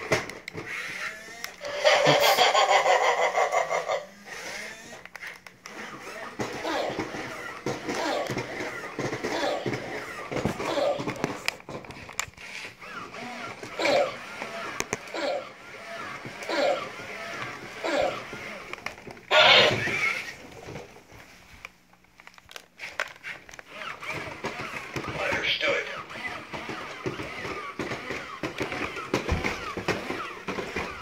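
Robosapien V2 toy robot walking on fresh alkaline batteries: its geared motors run steadily under short, regular step sounds. There are a couple of louder bursts of electronic sound, one about two seconds in and one about two-thirds of the way through.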